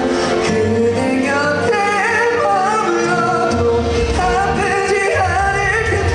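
A male solo singer sings with held, gliding notes into a handheld microphone over a backing track of music.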